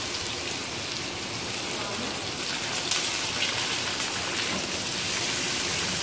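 Diced onions frying in hot oil in an aluminium wok: a steady sizzle.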